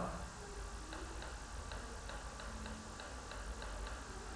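Computer mouse scroll wheel clicking as a page is scrolled: a run of light ticks, about three to four a second, starting about a second in, over a faint low hum.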